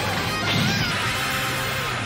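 A crash sound effect about half a second in, over loud background music with sustained tones.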